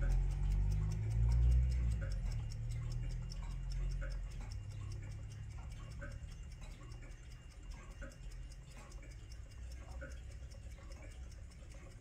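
Drocourt carriage clock ticking with fast, even beats, its back door open. A low rumble under the ticking fades away over the first few seconds.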